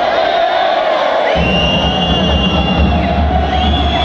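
Boxing crowd in a large hall shouting and cheering over music, with a low steady thudding setting in about a second and a half in.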